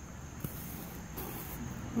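Quiet handling sounds as a soil pH meter probe is pushed into loose worm-bin bedding: a small click about half a second in and two short soft rustles. A faint steady high trill runs underneath.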